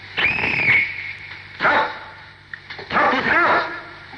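Yelping, whining cries like a dog's, in three separate calls over the steady low hum of an old recording.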